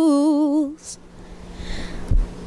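Unaccompanied female voice holding the final long note of a song, its pitch wavering and stepping slightly, then stopping under a second in.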